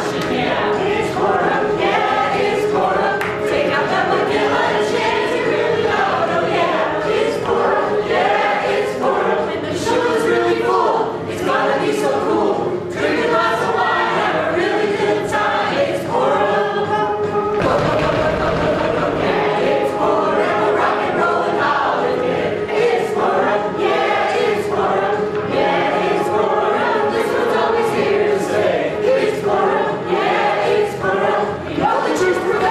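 Many voices singing together in chorus over backing music with a steady beat.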